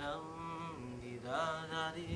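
A voice chanting a slow melody with long held notes, the pitch sliding up to a new note partway through.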